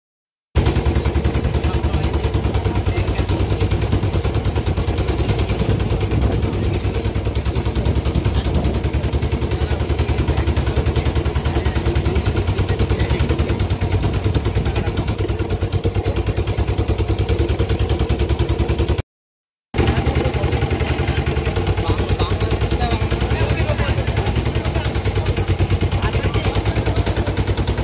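Small engine of a handlebar-steered vehicle running steadily under way, a fast even chugging pulse, cutting out briefly about three-quarters of the way through and then going on.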